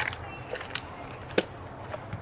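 A few small, sharp clicks and taps from hands plugging in and handling a gauge's wiring connector, the sharpest click about one and a half seconds in, over a faint low hum.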